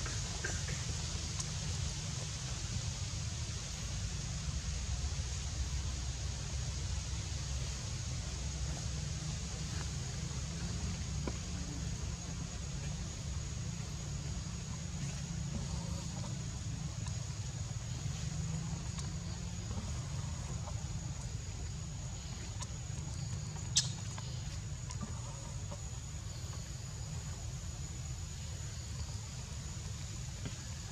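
Outdoor background ambience: a steady low rumble with a thin, steady high-pitched whine above it, and a single sharp click about 24 seconds in.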